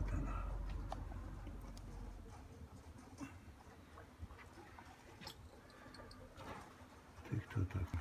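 Faint outdoor ambience: a low rumble dies away over the first two seconds, then near-quiet with a few scattered clicks. Near the end comes low cooing, typical of domestic pigeons.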